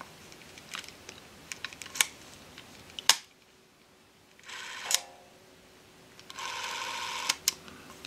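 Bolex B8VS regular 8mm cine camera's freshly serviced clockwork motor running twice, first for about half a second, then for about a second, at 16 frames per second; a quiet, steady whir, after several clicks from the camera's controls. The quietness makes it well suited to sound sync work.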